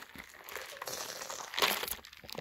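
Rustling and crinkling handling noise close to the phone's microphone as things are moved about, with a louder rustle near the end.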